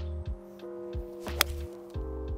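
A golf ball struck once by a forged Orion iron: a single sharp, crisp click about a second and a half in. It sits over background music with sustained chords and a low beat.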